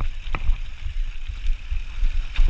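Full-suspension mountain bike descending a rocky gravel trail: tyres crunching over loose stone and the bike rattling, with a sharp clatter about a third of a second in. A steady low rumble of wind on the chest-mounted microphone runs under it.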